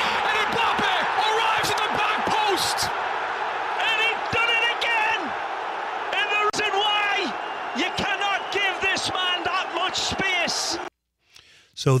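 Football match commentary with stadium crowd noise: a commentator calling the play over a steady crowd din. It cuts off suddenly about a second before the end.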